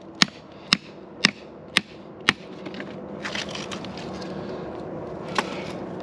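Hammer striking a steel chisel driven into a quartz vein: five sharp metallic blows, about two a second. Then rock scraping and shifting as the piece of gold ore comes loose, with one more knock near the end.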